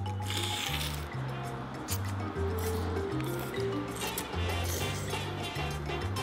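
Background music with a bass line that changes note every half second or so, over a man slurping egg noodles and broth from a soup spoon. The slurping is heard in the first second and again about four seconds in.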